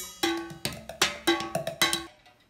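Drumsticks playing a quick beat on a homemade drum kit made from tin cans, jars and boxes, about six hits, several of them leaving a short clear metallic ring.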